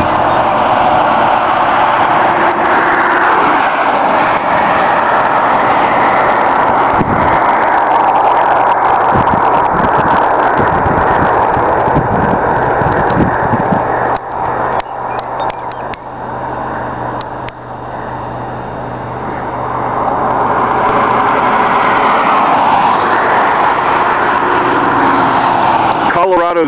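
Road and wind noise inside a car travelling along an interstate highway, with a steady low engine drone underneath; the noise eases for a few seconds about two-thirds of the way through.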